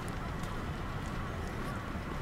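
Footsteps on wet stone paving, light ticks about twice a second, over a steady low city rumble.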